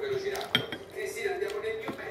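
Metal cutlery clinking against a ceramic plate: two sharp clicks, about half a second in and near the end, as a fork and knife are picked up to cut a slice of pizza.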